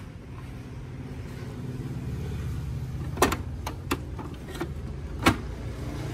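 Canon PIXMA G-series inkjet printer's internal motor running with a steady low hum, with a few sharp clicks and knocks as its scanner unit is lowered shut; the loudest knocks come about three and five seconds in.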